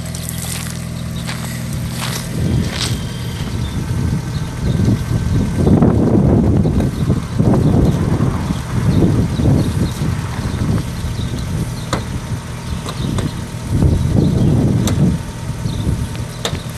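1992 Mazda MX-5 Miata's 1.6-litre four-cylinder engine idling steadily. From about two and a half seconds in, irregular louder rushing bursts come and go over it.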